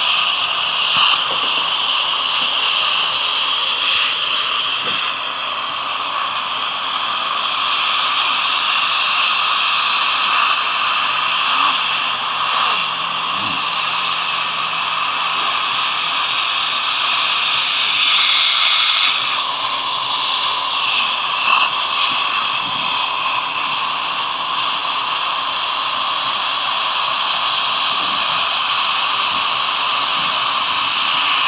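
Dental saliva ejector suction tube hissing steadily in the patient's mouth. About two-thirds of the way through, the hiss briefly grows louder and changes tone.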